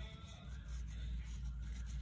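Faint rustle of a paper tissue being rubbed over a fountain pen nib to wipe off excess ink after filling, over a steady low hum.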